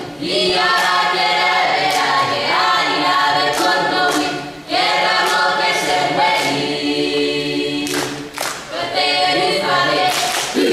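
A group of voices singing together in harmony without instruments, holding and changing notes as a chorus. Sharp percussive hits cut through the singing every second or so, and the singing breaks off briefly at the very start and again about five seconds in.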